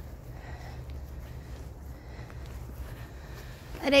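Quiet outdoor background: a steady low rumble with faint soft rustles and ticks, and no distinct event.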